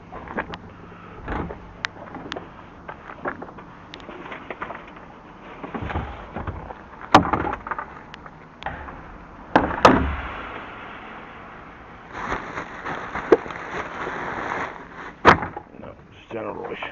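Large plastic wheelie bins being handled: their hinged lids knock and clatter, with three loud bangs about seven, ten and fifteen seconds in. Between them there are smaller knocks, and a stretch of rustling from rummaging through the contents near the end.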